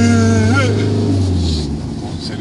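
Background music: a held pitched note over a steady low bass tone, the note sliding upward about half a second in; the bass stops near the end.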